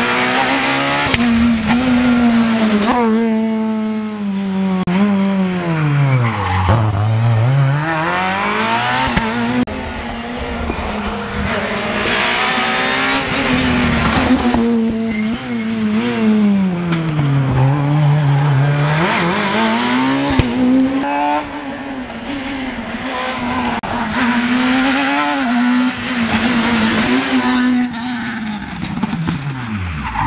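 Super 2000 rally cars, among them a Fiat Grande Punto S2000, run hard through tarmac hairpins on their naturally aspirated four-cylinder engines. The engine note falls deeply as each car brakes and shifts down for a hairpin, which happens about three times, and climbs again as it accelerates out, with quick steps in pitch at the gear changes.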